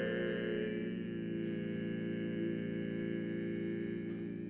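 Barbershop quartet of four men's voices singing a cappella, holding a long sustained chord. The lower voices shift pitch about a second in.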